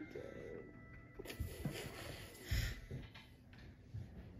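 Quiet room with a few faint soft knocks and a short breathy hiss about two and a half seconds in.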